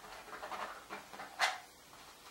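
Paintbrush working oil paint onto a stretched canvas: a run of short scratchy swishes, the sharpest about one and a half seconds in.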